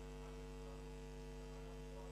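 Steady electrical mains hum: a low hum with a stack of steady overtones that stays unchanged throughout.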